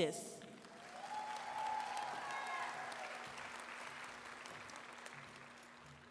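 Audience applauding, fairly faint, swelling over the first two seconds and then slowly dying away.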